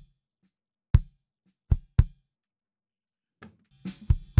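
Isolated drum hits from a recorded drum track, played through a Pro Tools Expander/Gate: about five sharp, irregularly spaced hits. Each one is cut off quickly, with dead silence between, because the gate shuts out everything below its threshold.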